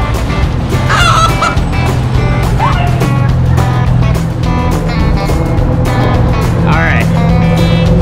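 Background music with a steady beat, with a few short voice sounds over it.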